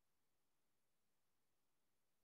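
Near silence: only a faint steady hiss of the recording's noise floor.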